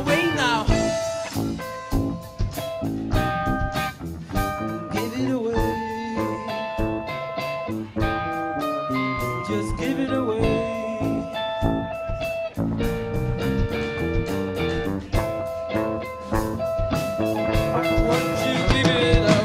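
Live rock band playing: electric guitar, bass and drums, the guitar holding long steady notes over the drum beat.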